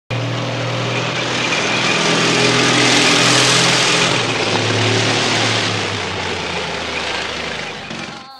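Tank engine sound effect: a continuous rumbling engine noise with a steady low hum, building over the first few seconds and then slowly fading.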